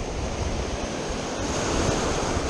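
Ocean surf washing in and foaming around the rocks of a jetty: a steady rushing of water.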